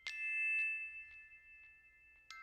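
A bell-like chime note struck once and ringing out as it slowly fades, with a few faint lighter tinkles after it, like a glockenspiel or chime music bed.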